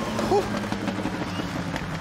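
Engines of two 850-horsepower Toyota drift cars, a GR Supra and an AE86 Corolla, running hard through a tandem drift, heard as a steady drone.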